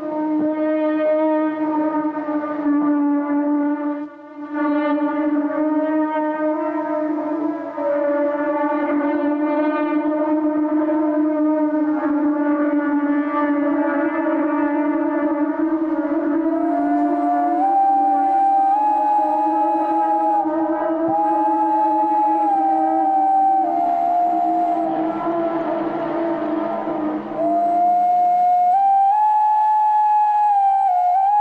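Recorded soundscape of Mesoamerican wind instruments: a steady low drone rich in overtones, joined about halfway through by a higher, flute-like line of held notes moving up and down in steps. The drone stops a couple of seconds before the end, leaving the higher tones.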